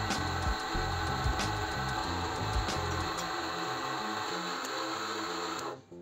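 Drill press boring through steel plate, running steadily, then cutting off suddenly near the end. Background music with a steady beat plays underneath.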